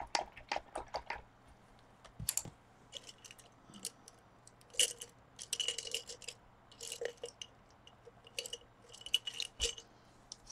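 Paintbrushes clicking and rattling against each other and their container as they are sorted through for a smaller one: irregular small clatters, busiest in the second half.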